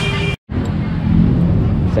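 Busy market-street background noise with the low rumble of motorbike traffic, broken by a brief dropout to silence less than half a second in.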